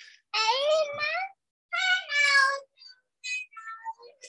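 A cat meowing twice, each call about a second long, the second falling in pitch, followed by fainter short sounds near the end.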